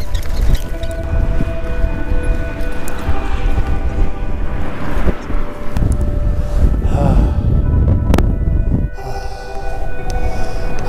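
Strong gusting wind buffeting the microphone of a camera on a moving bicycle, a heavy fluctuating rumble over the sound of tyres on gravel, with a single sharp click about eight seconds in.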